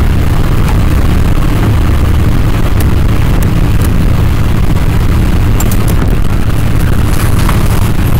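Loud, steady low rumble and hiss from a faulty microphone setup, running with no let-up and no speech over it. A few faint clicks stand out.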